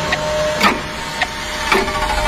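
Sharp mechanical ticks about twice a second over a steady, high held tone: sound effects in a film trailer.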